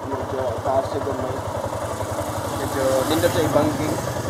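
A motorcycle engine idling steadily, an even low pulsing rumble.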